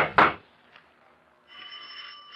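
Rapid knocking on a wooden door, a radio-drama sound effect: the last two raps of a quick series come right at the start, then the knocking stops. About one and a half seconds in, a faint steady high tone sets in.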